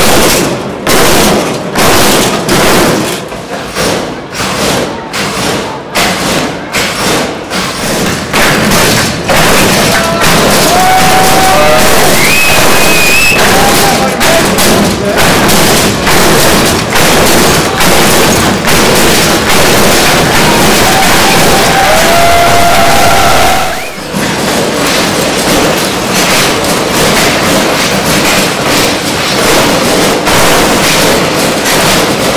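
Hydraulic lowrider hopping: a run of heavy thuds, a little under two a second, as the car bounces and lands, then a long spell of loud crowd noise with a few whistles. After a break near the end the thudding starts again.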